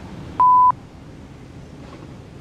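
A single short electronic beep: one steady pure tone at about 1 kHz, lasting about a third of a second, about half a second in, cut on and off abruptly with a click. Otherwise faint room hiss.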